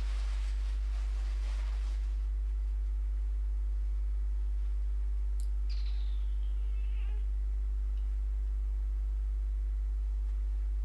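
Steady low electrical hum, with a faint higher-pitched chirp gliding downward for about a second and a half just after a small click around the middle.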